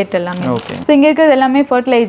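A person speaking, with a brief rattle of small garden-miniature figures clattering together in a plastic tray as a hand sifts through them about half a second in.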